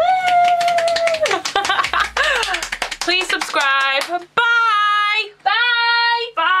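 A woman singing loudly: a long held note that starts suddenly, a stretch of rapid clattering sounds and sliding pitches, then short sung phrases of held notes.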